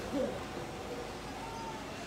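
A pause in speech filled with steady background room noise, with a faint, brief single tone near the end.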